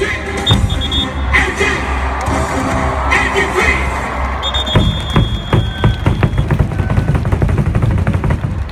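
Baseball cheer song played loud through stadium loudspeakers, with a strong bass; from about halfway through, a fast run of sharp beats comes in, about four a second.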